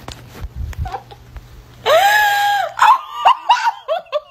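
A young woman lets out one high shriek lasting about a second. She then breaks into rapid, high-pitched laughter in short bursts, about four a second, each falling in pitch: she is laughing so hard she can barely breathe.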